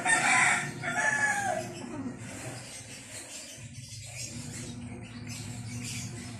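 A rooster crowing once in the first two seconds, the call bending in pitch in two parts. From about four seconds in, a low steady hum follows.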